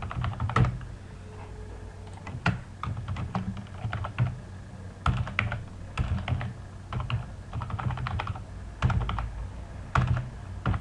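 Typing on a computer keyboard: quick runs of key clicks in irregular bursts, broken by short pauses.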